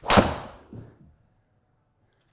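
A TaylorMade Stealth 2+ carbon-faced driver striking a teed golf ball with one sharp crack that dies away within about half a second. A smaller knock follows a little under a second later.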